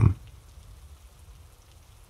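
A pause in the narration: a faint, steady hiss like light rain, with the end of a spoken word at the very start.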